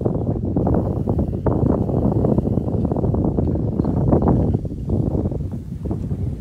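Wind buffeting the microphone: a loud, dense, gusting rumble that eases a little near the end.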